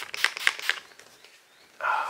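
A pump-spray bottle of facial mist spritzing onto the face several times in quick succession in the first second, each spray a short hiss. A brief muffled sound follows near the end.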